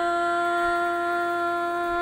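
A woman's voice holding one long, steady sung note in a Carnatic-style Tamil devotional song.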